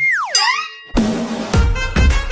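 A comic sound effect: a whistle-like tone sliding steeply down in pitch, with a short upward slide overlapping it. About a second in, upbeat outro music with a steady beat starts.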